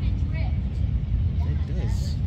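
Street ambience: a steady low rumble, with faint voices of people nearby.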